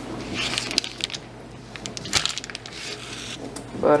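Hands breading a raw pork chop in a bowl of flour: soft scuffing and pressing sounds with a few short sharp taps, over a faint steady low hum.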